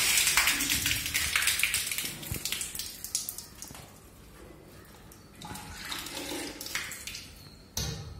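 Water gushing and splashing out of a plastic cartridge filter housing on a reverse-osmosis water plant as the housing is unscrewed and lifted off, with a second, weaker spill about five and a half seconds in. A sharp knock near the end.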